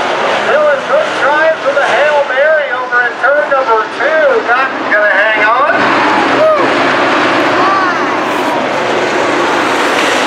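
Pack of dirt-track modified race cars running at speed, their V8 engines swelling and falling in pitch over and over as they go through the turns. About six seconds in, the sound becomes a steadier, noisier drone.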